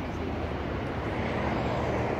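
Steady outdoor engine rumble, growing slightly louder toward the end.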